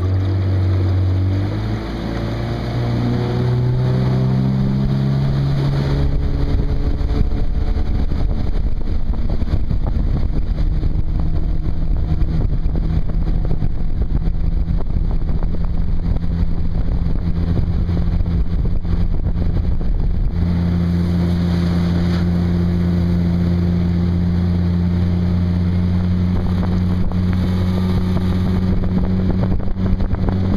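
A jon boat's outboard motor revving up, its note rising over the first few seconds, then running steadily under way, with a slight change in engine note about two-thirds of the way through.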